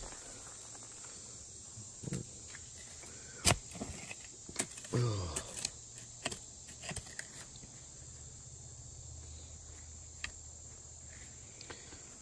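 Steady high-pitched drone of cicadas, with scattered sharp knocks and scrapes of a short-handled digging tool working dirt and clay, the loudest knock about three and a half seconds in.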